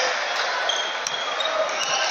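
Basketball dribbled on a hardwood court, a couple of sharp bounces about a second in and near the end, over the steady chatter of an arena crowd.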